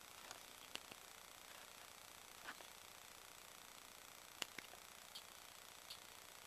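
Near silence with a handful of faint, sharp clicks from fingers handling a small plastic MP3 player and its buttons; the sharpest click comes a little past the middle.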